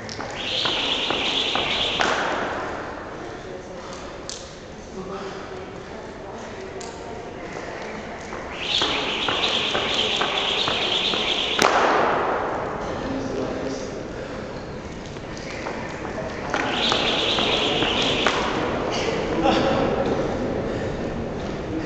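Jump rope whirring through double-unders in three short sets of a couple of seconds each, a fast whooshing, with light taps of rope and feet on the floor in between. The middle set stops suddenly with a sharp slap.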